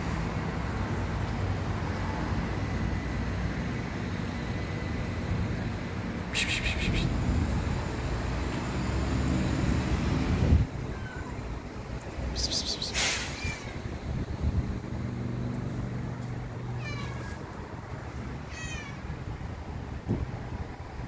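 A cat stranded on a high ledge and unable to climb down, meowing: about four high-pitched meows spaced several seconds apart, over a steady low rumble.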